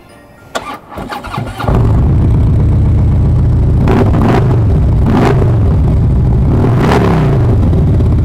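2016 Harley-Davidson Street Glide's Twin Cam 103 V-twin, breathing through Rinehart 4-inch exhaust, being started: the starter cranks briefly and the engine catches about a second and a half in. It then runs loud and steady, with three throttle blips that rise and fall.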